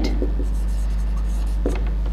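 Whiteboard marker writing a word on a whiteboard, with faint stroke sounds over a steady low hum.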